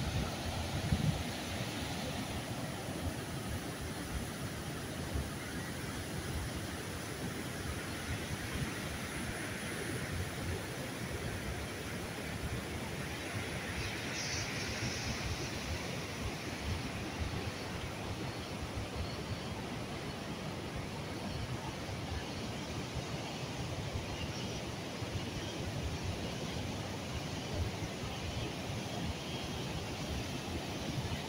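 River water rushing over boulders below a dam's open spillway, a steady, unbroken noise of white water.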